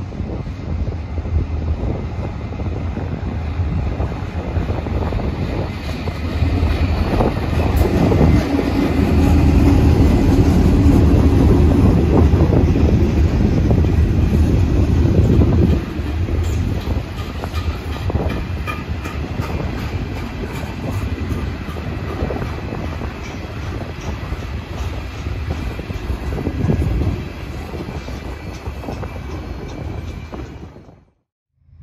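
Norfolk Southern diesel-hauled freight train passing close by. The locomotive's engine rumble builds and is loudest for several seconds about a third of the way in, then drops suddenly about halfway. The tank and coil cars follow with a steady rolling rumble and regular wheel clicks over the rail joints.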